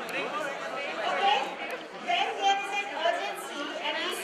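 Speech only: voices talking over one another in a large hall, with chatter rather than a single clear voice.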